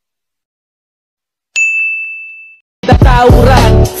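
A single bright notification-bell 'ding' about one and a half seconds in, ringing out for about a second: the sound effect of a subscribe button's bell icon. Near the end, loud bass-heavy DJ remix music with a singing voice cuts in.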